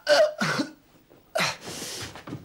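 A man coughing and retching in two bouts, the second a rough, breathy heave near the end: the sounds of someone dizzy and sick from drink, about to vomit.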